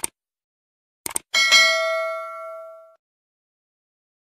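Subscribe-button animation sound effect: a click, a quick double click about a second in, then a notification bell ding that rings out and fades over about a second and a half.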